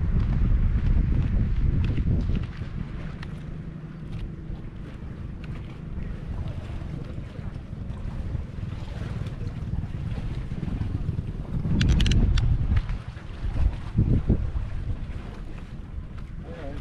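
Wind buffeting the camera microphone in uneven gusts, a low rumble that is strongest for the first couple of seconds and again about twelve seconds in, with a few short crackles from the gusts.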